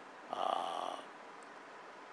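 A man's short rasping breath-like vocal sound, without pitch, lasting under a second and starting about a third of a second in.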